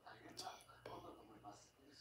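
Near silence, with a few faint whispered words.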